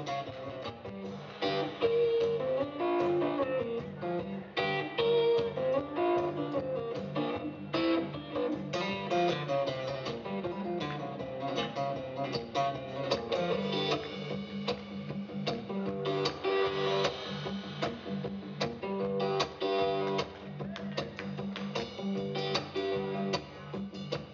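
Blues guitar played live: a steady stream of plucked notes, melody lines over a repeating bass line.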